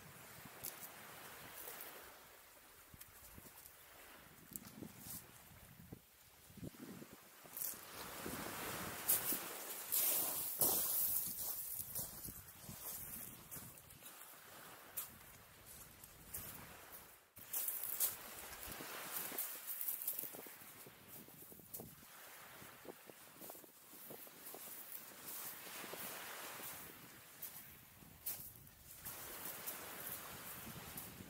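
Wind and small waves washing onto a shingle beach, in slow swells, with pebbles crunching underfoot and scattered clicks.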